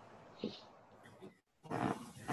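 A quiet pause in a small room, broken by one short, soft vocal sound about half a second in and a breathy intake of breath near the end.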